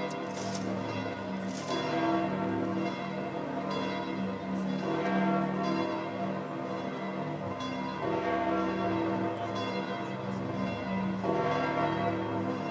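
Large church bells pealing together, their strikes overlapping into a continuous ringing.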